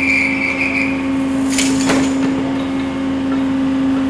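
Steady machinery hum in an aircraft carrier's hangar bay. A high, held tone sounds for about the first second, and a short hiss with a knock comes about two seconds in.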